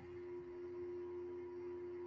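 A faint, steady hum holding one pitch, with no other sound.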